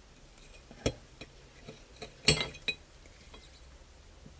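A metal blade clicking and clinking against a ceramic plate as it cuts through a woody plant stem. There are several sharp, separate clicks; the loudest, a little past halfway, rings briefly.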